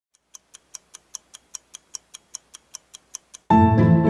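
Fast, even clock-like ticking, about five ticks a second. Near the end it gives way abruptly to louder music.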